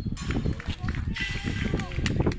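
Shouts and calls of young footballers and people around a pitch during play, rising and falling in pitch through the second half, over a steady low rumble of wind on the microphone.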